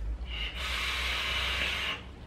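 A long inhale drawn through a vape pen with a rebuildable, cotton-wicked atomizer: a steady airy hiss of air pulled through the atomizer. It starts about half a second in and stops suddenly just before the end.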